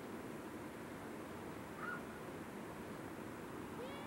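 Steady outdoor background noise in woodland. A brief chirp-like call comes about two seconds in, and a short gliding call comes near the end.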